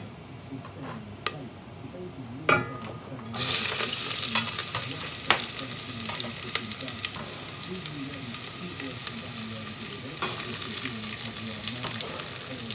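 Chopped onions tipped into a hot pan to fry: a couple of light knocks, then about three seconds in a sudden loud hiss as they land, settling into a steady crackling sizzle.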